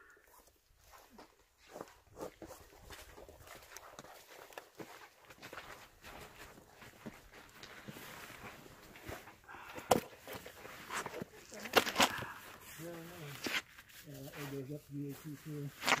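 Faint rustling and tugging as the laces of a wet hiking boot are loosened and the boot is pulled off the foot, with a few sharp clicks about ten and twelve seconds in. A voice is heard near the end.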